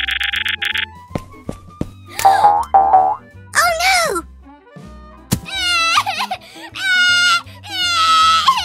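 Cartoon sound effects over light background music: a short electric buzz at the start, then squeaky cartoon vocal sounds, and from about six seconds a long wavering cartoon crying wail.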